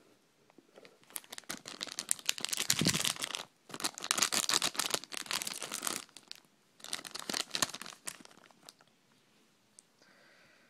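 A shiny plastic-foil blind-bag pack being torn open and crinkled in the hands, in three stretches of crackling with short breaks between them.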